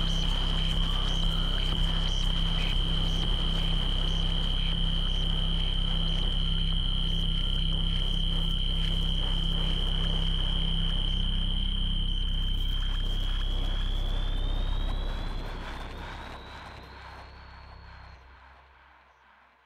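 Power-electronics noise music: a steady high-pitched whine over a low droning hum and hiss. Near the end the whine bends upward in pitch while the whole track fades out.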